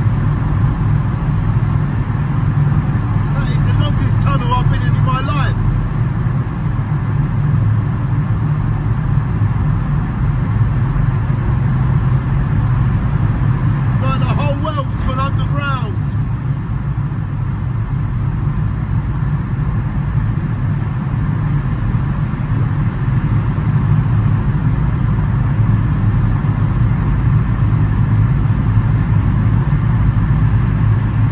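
Steady low rumble of a car driving through a road tunnel, heard from inside the cabin: tyre and engine noise. Twice, about ten seconds apart, a brief wavering higher-pitched sound rises over it.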